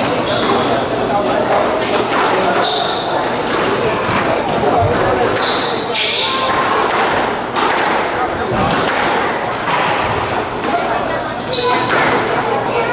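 Squash rally: the rubber ball repeatedly smacking off racket strings and the court walls, with short high squeaks of shoes on the wooden court floor, all ringing in the hall.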